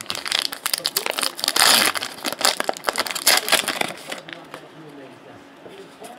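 Foil trading-card pack wrapper crinkling and crackling as hands open and handle it, a dense run of crinkles for about four seconds, loudest about two seconds in, then fading.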